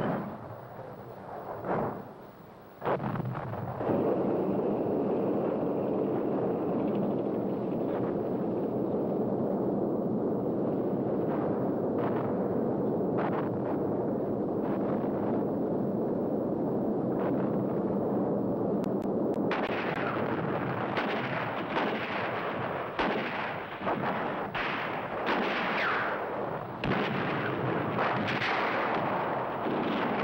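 Battle sounds of gunfire and artillery: a few sharp bangs, then a steady rumble with scattered shots, turning into rapid, repeated firing and bangs from about two-thirds of the way through.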